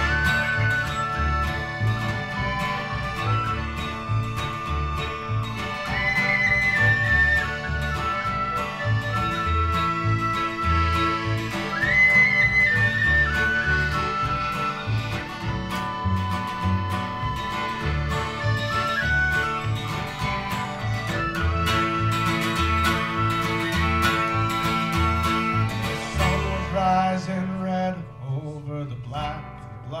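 Instrumental break by an acoustic folk band: a high lead melody of held, sliding notes over strummed acoustic guitar and a steady bass pulse. Near the end the lead line stops and the guitar carries on more quietly.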